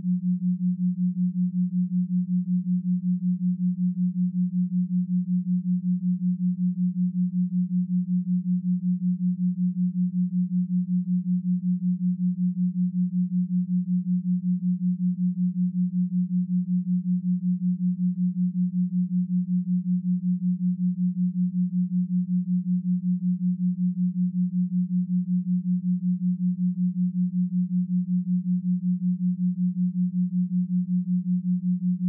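Binaural-beat tone: a single low, steady sine tone with no other music, throbbing evenly several times a second as its two slightly detuned tones beat against each other.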